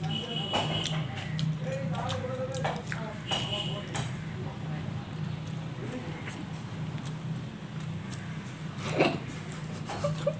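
People eating noodles with chopsticks: slurping and chewing with light clicks of chopsticks on bowls, over a steady low hum. A sharper knock comes near the end.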